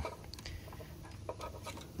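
Faint handling noise: a few light ticks and rustles as a hand takes hold of wiring and plastic connectors.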